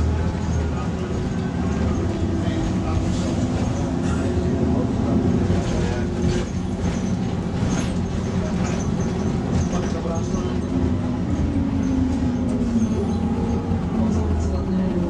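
Volvo B6 LE single-deck bus heard from inside the passenger saloon while on the move: the six-cylinder diesel engine and drivetrain running under way, its note rising and falling with road speed and dropping away near the end.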